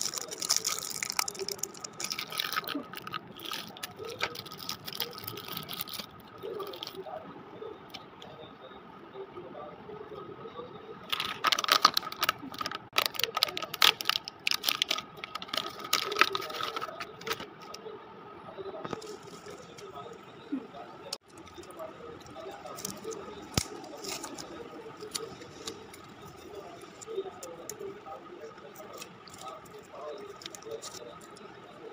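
Plastic and foil sweet wrappers crinkling and crackling as they are handled and unwrapped close to the microphone, with the busiest, loudest crackling from about 11 to 17 seconds in.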